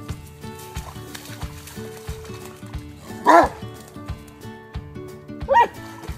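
Two short dog barks about two seconds apart, over background music with a steady beat.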